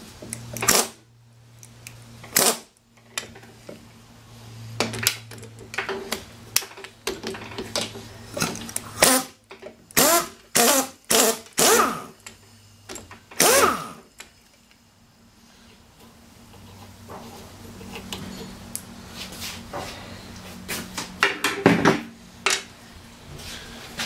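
Pneumatic impact wrench hammering in a string of short bursts on the nut of a lawn mower's drive pulley, trying to break it loose so the pulley can come off. The bursts come thick in the first half and stop about 14 seconds in, with one more near the end.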